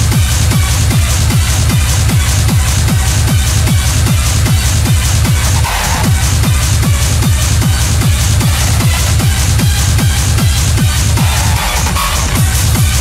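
Hard techno DJ mix: a fast, steady kick drum, each kick dropping sharply in pitch, under busy repeating high percussion.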